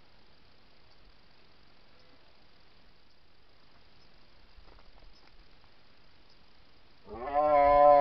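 Red deer stag giving one loud rutting roar, about a second long, near the end, after several seconds of faint background.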